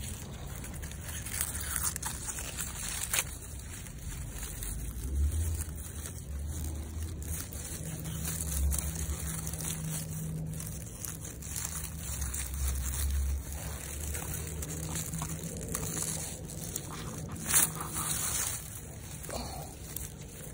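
Radish leaves rustling and crinkling as hands push through and handle the foliage, a crisp crackle that sounds almost like plastic, with a sharper crackle about three seconds in and the loudest one near the end. A low rumble runs under it through the middle.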